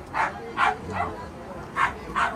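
A small dog yipping: about four short, high-pitched barks, three close together in the first second and one more near the end.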